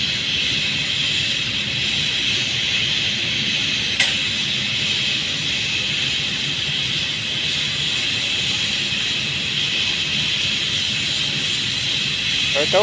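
Paint spray gun hissing steadily as coating is sprayed onto underground pipes, with a low machine rumble underneath and one brief click about four seconds in.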